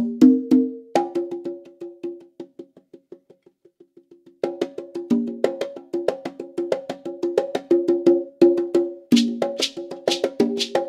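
Congas played with bare hands in fast, even strokes across drums of several pitches. About a second in the playing thins to soft, fading taps that almost stop, then the full fast pattern returns at about four and a half seconds, with sharper, brighter hits joining near the end.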